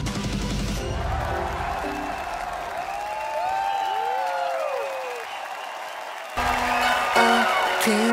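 A pop song's last bars fade into studio-audience applause and cheering. About six and a half seconds in, the sound cuts suddenly to the start of another song, louder, with steady held notes.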